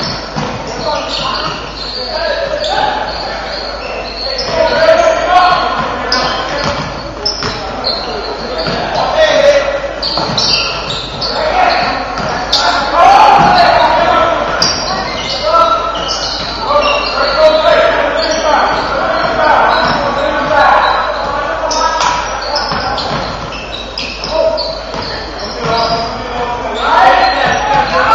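Basketball game in a gym: a ball bouncing on the hardwood floor and sharp short impacts, under shouting and chatter from players, coaches and spectators, echoing in the large hall.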